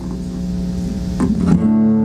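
Acoustic guitar chords ringing out, with a fresh chord strummed about one and a half seconds in that rings on louder.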